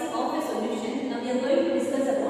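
Speech only: a woman lecturing.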